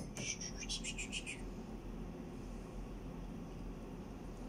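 Plastic measuring spoon stirring coffee in a glass tumbler: a quick run of soft scraping strokes, several a second, over the first second and a half, then only a low room hum.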